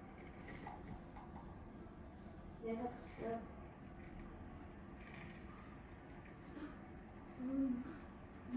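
Faint steady hiss of rain and runoff water on a flooded street draining into a storm drain, with a few short murmured voice sounds.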